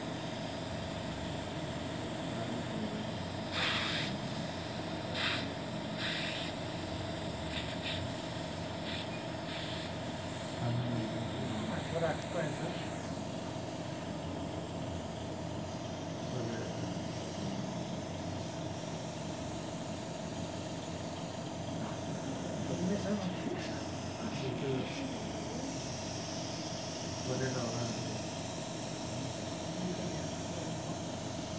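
A steady machine hum with a constant mid-pitched tone, broken by several short hisses in the first ten seconds, with faint voices murmuring behind.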